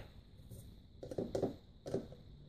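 A few light plastic taps and clicks as a scoop of whey protein powder is tipped into a plastic shaker cup.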